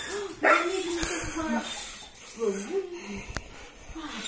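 A large shaggy dog whining in a few short, pitched cries, excited at greeting its returning owner, with a single sharp click late on.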